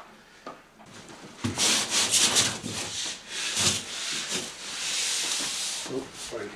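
Plasterboard sheet scraping and rubbing against the wall and floor as it is pushed into place, in a series of short scrapes and then a longer one near the end.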